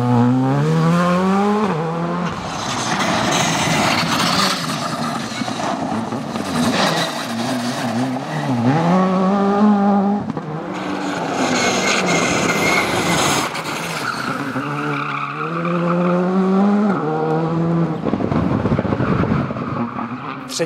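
A Škoda Fabia rally car at full stage pace. The engine revs climb and fall several times as it shifts and lifts for corners, and tyres scrabble and slide on loose dirt and gravel between the revs.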